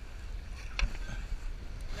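Sailboat under sail: wind rumbling on the microphone with the rush of water along the hull, and one sharp knock a little under a second in.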